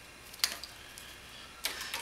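Scissors snipping the excess off twisted paper cord: a sharp snip about half a second in and another click near the end.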